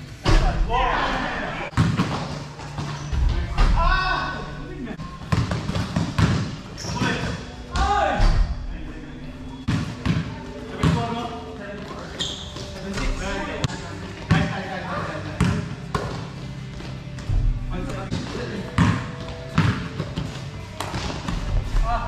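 A basketball bouncing and landing on an indoor court floor during play, a run of irregular thuds, mixed with players' shouts.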